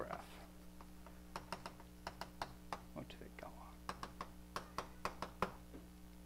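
Chalk writing on a blackboard: an irregular run of small taps and clicks as letters and an arrow are written, over a steady low hum.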